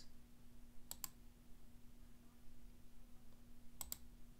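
Faint clicking from computer controls: a quick double click about a second in and another near the end, over a low steady hum.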